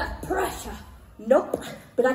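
A performer's voice on stage making short pitched vocal sounds, with a loud, short rising cry about one and a half seconds in.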